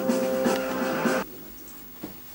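Karaoke music with a long held sung note over the backing track, stopping abruptly about a second in; a quieter room follows.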